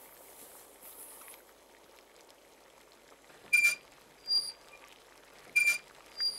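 Short squeaks from a child's tricycle as it is pedalled away, three of them in the second half, alternating between a high and a higher pitch.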